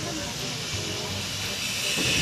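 A steady hiss, with faint voices underneath.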